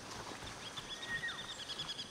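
Jungle ambience with birds calling: a rapid run of short, high chirps begins about half a second in and keeps going, with a brief falling whistle in the middle.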